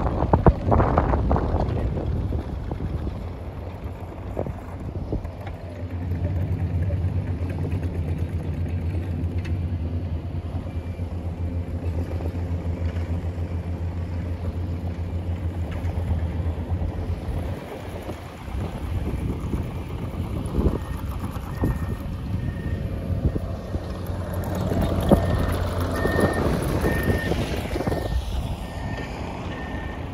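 A car running and rolling slowly, heard from inside the cabin: a steady low engine hum under road noise. In the last third a high electronic beep repeats at even intervals.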